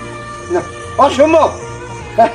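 Background music with a short, meow-like wailing cry about a second in, its pitch rising and then falling.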